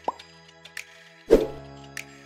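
Light background music under two cartoon pop sound effects: a short rising 'bloop' just after the start, then a louder pop about 1.3 seconds in, as on-screen graphics pop into view.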